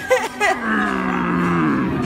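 A person's voice: short, high, wavering vocal sounds, then one long, low, drawn-out vocal sound that slowly falls in pitch, like a playful moo.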